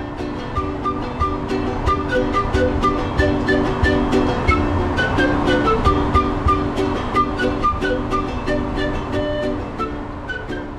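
Small wooden guitar strummed in a quick, steady rhythm, with a melody of short notes above the strumming.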